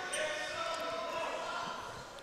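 Gymnasium background during a stoppage in a basketball game: faint, overlapping voices of players and spectators in a large, echoing hall.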